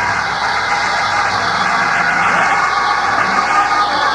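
Church music playing under loud, sustained congregation noise during a sermon's pause, heard on an old tape recording.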